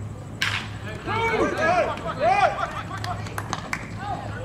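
A pitched baseball struck by a wooden bat: one sharp crack about half a second in. It is followed by people shouting and calling out, which is the loudest part, and a few short sharp clicks near the end.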